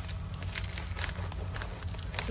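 Scissors cutting along a plastic poly mailer, a run of small crisp snips and crinkles of the plastic.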